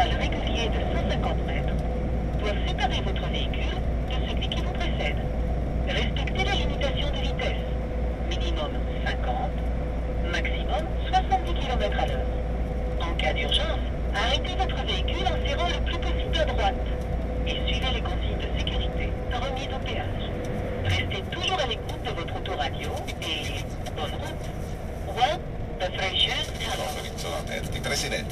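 Thin-sounding Italian radio talk playing in a lorry's cab, over the low steady drone of the truck's engine and tyres; the deep rumble drops away about 19 seconds in.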